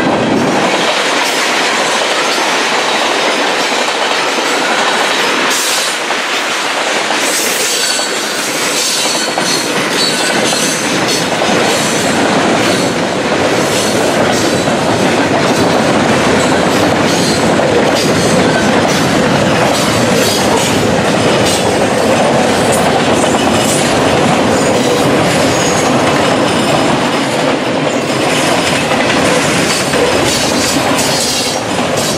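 Freight cars of a mixed freight train rolling past at close range, the wheels clacking steadily over the rail joints.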